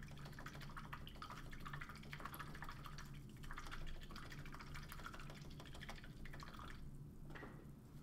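Faint fine crackling and trickling of water stirred in a small pot, a paintbrush being rinsed, dying away about seven seconds in.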